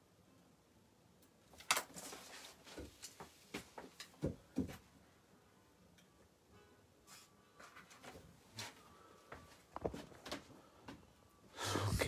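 Handling noise: a series of light, irregular knocks, clicks and rustles as small objects are moved and set down, the sharpest knock about two seconds in.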